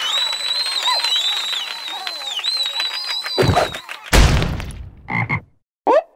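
Cartoon frog croaking in a long, rapid rattle with a thin, wavering whistle-like tone above it. This is followed by three heavy thuds, the second the loudest, and a short rising swoop at the end.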